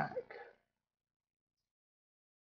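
A man's voice trailing off in the first half second, a short throaty sound at the end of his phrase, then complete silence.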